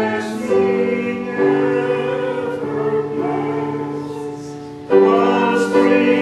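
A choir singing held chords, with sung consonants audible. It drops quieter in the middle and comes back loudly a little before the end.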